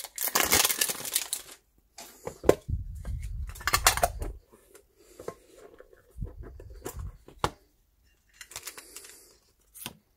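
Packaging of a Pokémon TCG metal mini tin torn and crinkled, a loud ripping burst in the first second and a half. Then scattered handling noise: sharp clicks, dull knocks and rustling as the tin and its cardboard insert are handled.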